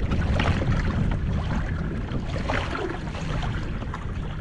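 Water lapping and splashing against a moving fishing kayak's hull, with wind buffeting the microphone as a steady low rumble.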